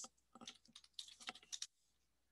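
Faint computer keyboard keystrokes, a quick run of about a dozen key presses that stops about one and a half seconds in: a password being typed at a terminal prompt.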